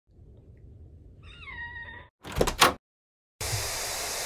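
A short high-pitched cry that dips in pitch and then holds, over a faint low rumble. Then two sharp thumps close together, the loudest sounds. After them comes about a second of steady television-static hiss that cuts off suddenly.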